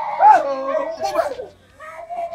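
A woman wailing aloud in distress, her voice rising and falling in pitch and loudest just after the start, breaking off briefly about a second and a half in.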